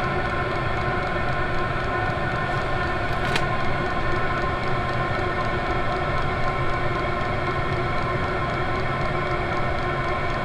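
A Chinese 8 kW all-in-one diesel parking heater running on its default setting at a quick rate: a steady, fairly loud hum from its blower fan and burner, with several held tones on top. A faint click comes about three seconds in.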